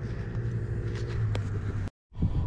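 Steady low rumble of a running engine, with a single faint click about two-thirds of the way in; the sound cuts off abruptly just before the end.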